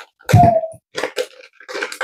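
A single short cough from a woman, followed about half a second later by two light clicks.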